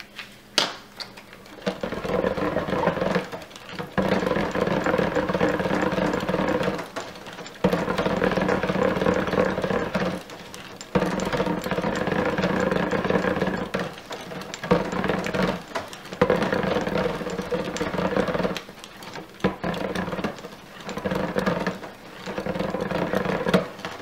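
Stick blender running in short bursts in a pot of cold-process soap batter, its motor humming for one to three seconds at a time, then stopping and starting again repeatedly. The sound starts about two seconds in, and the pulses get shorter near the end.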